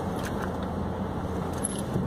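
Steady hum of a car heard from inside the cabin, with a few faint light clicks.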